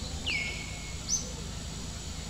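A bird whistling twice: a call that slides down and holds a steady note for about half a second, then a shorter, higher whistle about a second in, over a steady low background rumble.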